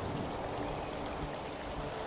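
Creek water running, a steady, even rush, with a few faint high ticks near the end.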